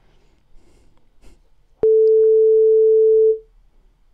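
A single steady electronic beep, one pure mid-pitched tone, starting abruptly with a click about two seconds in and lasting about a second and a half: the signal tone of an exam listening recording, marking the start of the replay.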